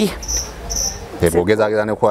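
An insect chirping: two short, high-pitched chirps in the first second.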